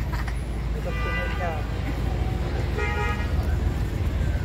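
Steady low rumble of road traffic, with two short held tones about a second in and near three seconds in.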